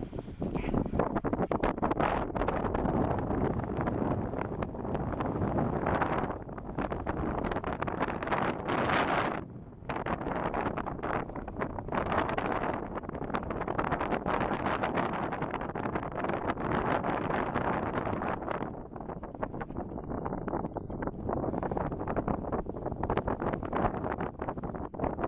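Wind blowing across the microphone in uneven gusts. There is a brief lull about ten seconds in.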